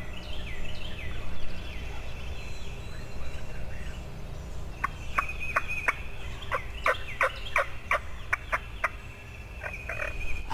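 Wild turkey gobbler gobbling in a quick descending rattle about a second in, followed a few seconds later by a run of short, sharp turkey calls at about two to three a second.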